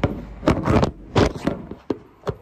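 Handling noise: a few short scrapes and rustles close to the microphone.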